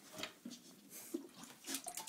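Faint, irregular splashing and sloshing of water in a toilet bowl as a dog paws at it and pushes its nose in.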